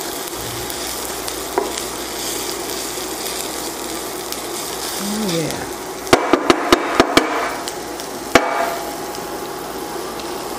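Shredded Brussels sprouts sizzling in oil in a stainless steel skillet as they are stirred with a wooden spatula. About six seconds in comes a quick run of about six sharp knocks, and one more a little after eight seconds, as the spatula strikes the pan.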